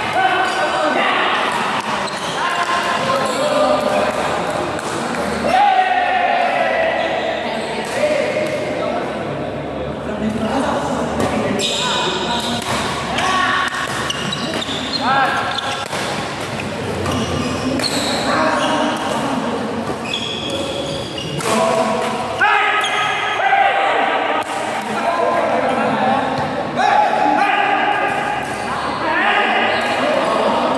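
Badminton doubles rally in a large hall: rackets striking a shuttlecock in sharp, echoing hits, with people's voices through much of the time.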